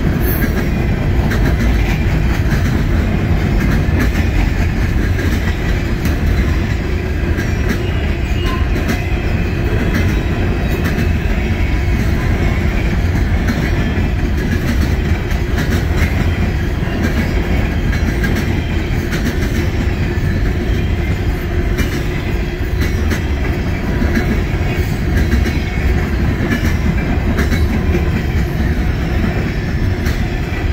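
Coal hopper cars of a freight train rolling past: a steady heavy rumble of steel wheels on rail, with scattered clicks as the wheels cross rail joints.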